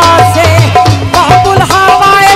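A live Punjabi qasida: a woman sings through an amplified microphone over a steady hand-drum rhythm.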